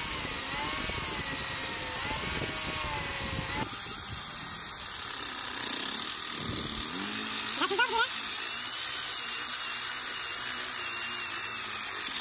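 Electric angle grinder with a sanding disc running against bamboo, its whine wavering in pitch as the piece is pressed on. About three and a half seconds in it gives way to an electric drill boring into a wooden block with a Forstner-type bit, a higher, hissier cutting sound.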